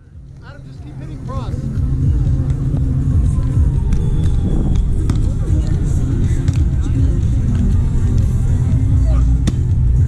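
Wind buffeting the camera's microphone: a steady low rumble that fades in over the first couple of seconds, with faint voices over it. A single sharp hit comes near the end, during a volleyball rally.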